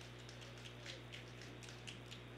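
Near silence on the broadcast feed: a faint steady low hum with scattered faint clicks.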